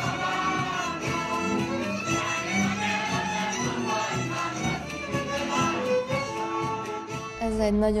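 Hungarian folk music played on fiddle and other bowed strings, in long held notes. It cuts off just before the end.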